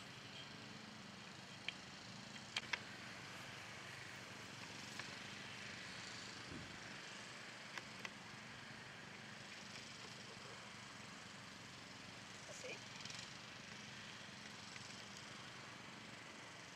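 Quiet outdoor background hiss with a few short sharp clicks: one near two seconds, a pair about two and a half seconds in and another pair near eight seconds.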